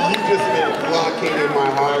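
Speech: a man talking into a microphone, with other voices behind him.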